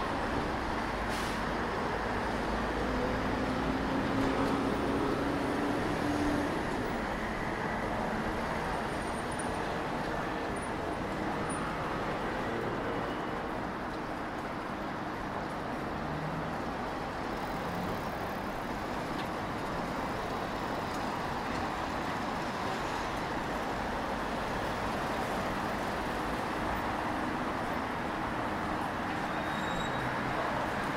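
City street ambience: steady road traffic noise from passing cars and buses, with one vehicle's engine tone standing out a few seconds in.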